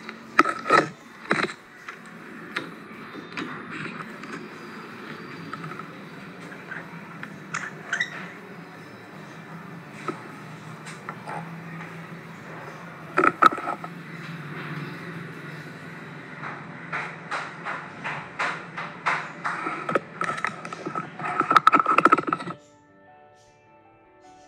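Hands working a metal lathe's chuck and tailstock to hold wires: repeated metallic clicks and knocks over a steady low hum. The sound cuts off suddenly near the end and soft music takes over.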